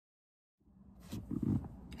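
Silence at first, then faint low rumbling and muffled knocks from a phone being handled as a recording starts inside a car, ending in a sharp click.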